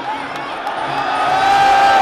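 Muay Thai stadium crowd yelling and cheering, with a long held shout that swells about a second in, over music.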